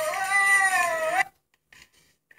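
A long, high-pitched animal wail that wavers up and down in pitch, then cuts off abruptly about a second in.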